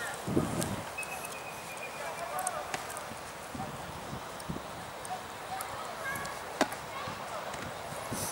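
Footfalls of a group of rugby players jogging together on artificial turf in studded boots, with a low thump just after the start and faint voices.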